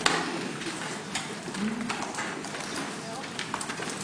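Lecture-hall room noise: a low murmur of indistinct voices with scattered sharp clicks and knocks, the loudest right at the start.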